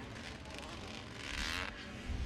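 Faint, distant motocross bike engine revving, its pitch wavering and getting a little louder just past the middle.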